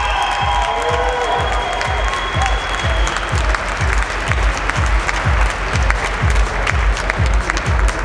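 Audience applauding over background music with a steady, thumping beat.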